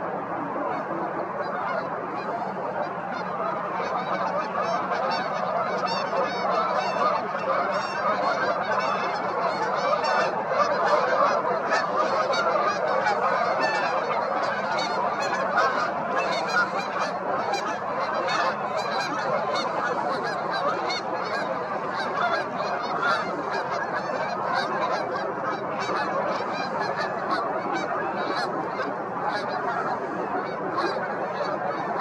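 A dense, continuous chorus of many waterbirds calling at once, a large flock heard together, swelling slightly toward the middle.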